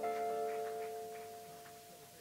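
A jazz quartet's closing chord, several held notes ringing out and fading away over the two seconds, with light regular taps above it, as a tune ends.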